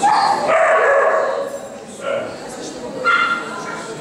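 A dog yipping and whining: a long loud cry in the first second and a half, then a shorter, higher one about three seconds in.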